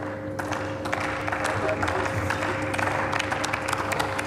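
Scattered clapping from members of a large parliamentary chamber, with a steady low two-pitched tone running underneath.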